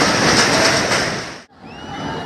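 Loud, steady rumble and rush of buildings collapsing and debris falling, with dust billowing up. It cuts off suddenly about one and a half seconds in, leaving a much quieter background with a thin whistle.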